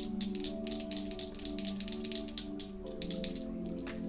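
Soft background music of sustained chords, shifting to a new chord about three seconds in, under a quick run of crisp clicks and flicks from tarot cards being shuffled and handled, thinning out toward the end.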